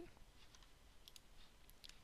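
Near silence with a few faint computer mouse clicks.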